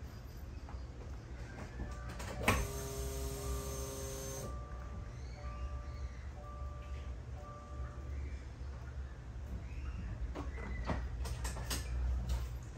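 A Subaru WRX's cabin electrics sound: a sharp click, a chime of several steady tones for about two seconds, then the turn-signal indicator sounding in short pulses about one and a half times a second for a few seconds as the newly fitted mirror turn-signal lamp blinks. A few clicks follow near the end over a steady low hum.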